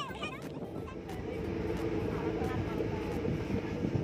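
Steady engine and road noise of a pickup truck carrying passengers in its open bed, growing a little louder about a second in.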